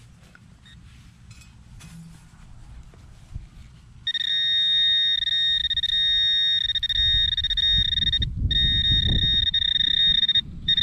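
Handheld metal-detecting pinpointer probed into a plug of dug soil sounds a steady high-pitched alarm tone from about four seconds in, signalling a metal target close to its tip. The tone breaks off briefly once near the end, over low rustling of the soil being worked.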